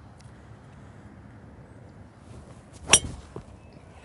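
A metal-headed golf driver strikes a teed ball on a full-speed swing, about 118 mph club-head speed. It gives one sharp, ringing crack about three seconds in.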